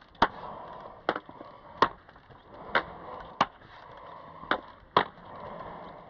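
Ski pole tips striking asphalt, a sharp click about once a second, over the steady rolling of roller-ski wheels on pavement.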